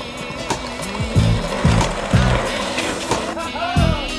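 Skateboard wheels rolling on concrete, with a rough rush of wheel noise through the middle, mixed over hip-hop music with a steady kick-drum beat.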